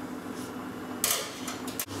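Glassware handling: a glass thermometer and beaker at a stainless steel sink, with a short clatter about halfway through and a few light clicks near the end. It breaks off suddenly into a steady low hum.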